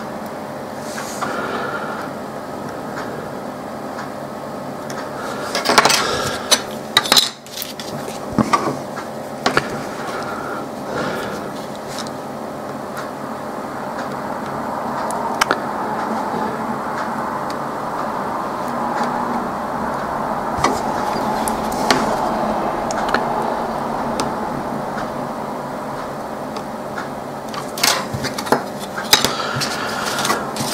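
Small metallic clicks and taps of fine tweezers and a soldering iron being handled and set down on a workbench mat, in a cluster about six to nine seconds in and again near the end, over steady background noise.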